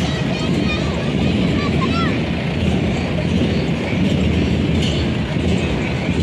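Steady low engine rumble of the flower-decorated float vehicle as it moves slowly along, with a crowd's voices mixed in.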